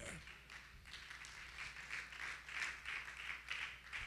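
Faint clapping from a congregation, about three claps a second, over a low steady hum.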